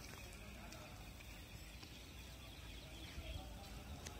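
Faint outdoor ambience: a low, steady background rumble, with a few faint high chirps near the end.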